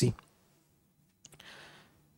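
A pause between prayers. A spoken word ends right at the start, then near silence with a few faint clicks about a second and a quarter in, followed by a soft, breath-like hiss for about half a second.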